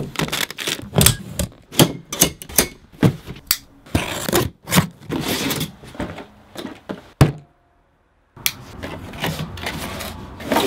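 A cardboard shipping box and its packaging being opened and handled: a quick, irregular run of scrapes, taps and thuds. The noise stops dead for about a second near the end, then the handling resumes.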